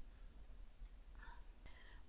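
Near silence: faint room tone with a couple of small, faint clicks, a computer mouse button being clicked.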